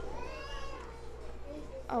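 A faint, drawn-out high cry whose pitch wavers up and down, heard over a steady low hum. It fades after about a second, just before a woman starts speaking.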